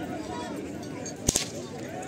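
A handler's whip cracking to drive a pair of bulls on, two sharp cracks in quick succession a little over a second in, over crowd chatter.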